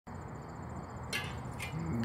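Crickets chirping: a steady, evenly pulsed high trill. Two short rustling noises break in about a second and a second and a half in.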